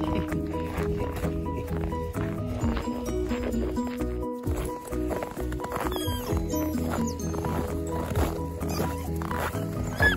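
Background music with a steady bass line under a stepped melody, with a brief break about four seconds in.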